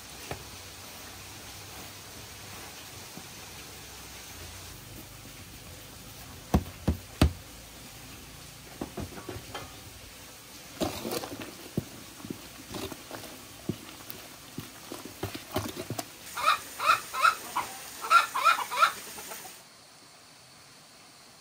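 Two sharp knocks, then scattered rustling, and near the end a run of short, quick, repeated calls from domestic fowl.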